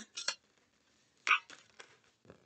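Tarot cards being handled: a few light, sharp clicks, the most distinct about a second in, with little else between.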